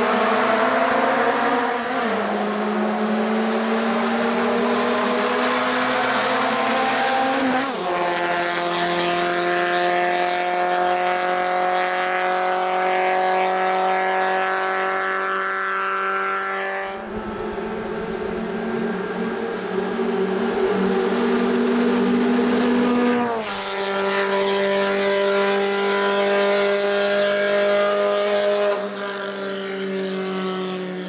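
Škoda 130 RS's rear-mounted four-cylinder engine at full throttle on a hill climb. It revs hard, and its pitch climbs and then drops sharply several times as it shifts gear.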